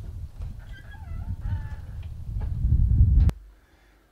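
A low, gusty rumble that builds up and cuts off abruptly a little over three seconds in, with a short, wavering animal call about a second in.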